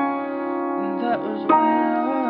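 Grand piano being played: held notes ring on, and a new chord is struck about one and a half seconds in.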